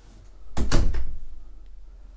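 A door being moved in a small bathroom: a sudden knock about half a second in, then a rumble that fades over about a second.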